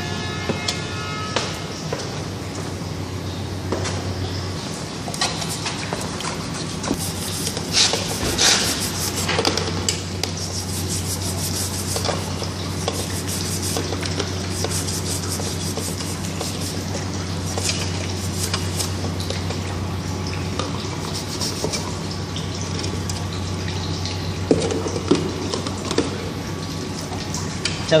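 Water sloshing and splashing in a plastic bin as a Y-strainer's rusty cylindrical metal screen is scrubbed with a brush and rinsed, with scattered scrapes and knocks. A steady low hum runs underneath.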